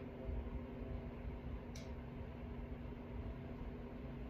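Quiet workshop room tone: a steady low hum with faint background noise, and one faint short click a little before the middle.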